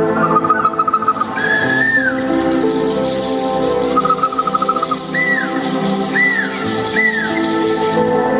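Instrumental music with sustained held chords, overlaid by high bird-like whistled trills, one longer whistle that rises and falls, and three short arching chirps in the second half.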